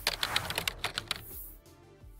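A quick run of typing-like clicks from a logo sound effect as the text types on, fading out after about a second and a half, over soft music.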